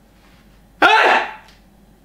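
A man's voice in one short, loud wordless burst, about a second in and lasting about half a second.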